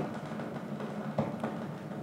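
Cassini RPWS radio plasma wave recording turned into sound and played over the lecture hall loudspeakers: a steady hiss with occasional pings of dust particles hitting the spacecraft, one sharp one a little after a second in.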